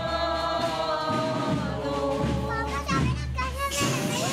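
A crowd of people singing a hymn together as they walk, many voices holding long notes and moving from note to note.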